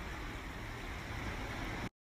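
Steady outdoor background noise with a low, unsteady rumble on the phone's microphone. Near the end it cuts to dead silence for an instant, where one recorded clip joins the next.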